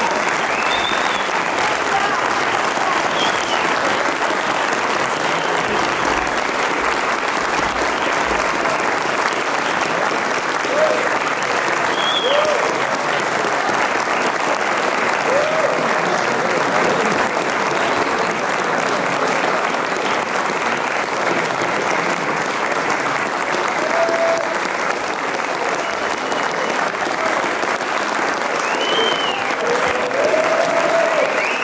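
Concert audience applauding steadily, with a few short cheers.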